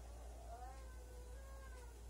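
Faint, high-pitched wavering calls in the background, one rising briefly and one held a little longer.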